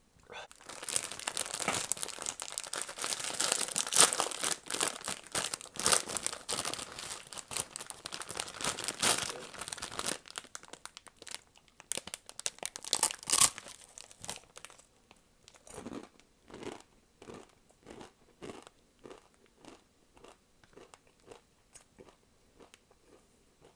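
Plastic crinkling and tearing for about ten seconds. Then come sharp crunches as a dry, uncooked instant ramen block is bitten into, followed by steady crunchy chewing at about one and a half chews a second.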